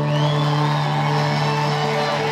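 Live acoustic string band music led by a bowed fiddle, over a strong low note held throughout, with sliding high notes about a quarter of a second in.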